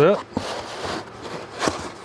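Cardboard box and its packing rustling and scraping as a hand rummages inside it, with a couple of sharp knocks, one just after the start and one near the end.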